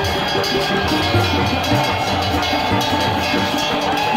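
Devotional festival music: fast, continuous drumming with ringing metallic percussion.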